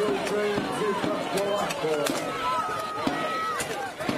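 Men's voices shouting over an armoured melee, with sharp knocks of weapons striking steel armour and shields scattered through it; one long high call is held for about a second past the middle.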